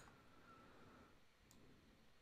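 Near silence: room tone with a faint single click about a second and a half in.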